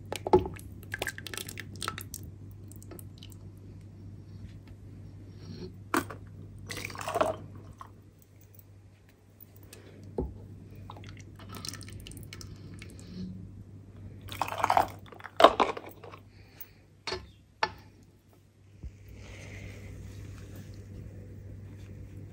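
Thick hot jam being ladled from a stainless steel pot into glass jars through a plastic funnel: the ladle scoops and knocks, and the jam plops and squelches in irregular bursts. A low steady hum sits underneath.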